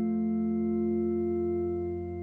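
Organ holding a single sustained chord, steady and unchanging.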